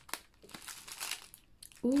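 Plastic packaging and bubble wrap crinkling as it is handled, in short, irregular rustles.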